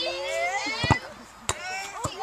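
A child's long shout rising in pitch, then two sharp knocks, the first about a second in, and faint voices after.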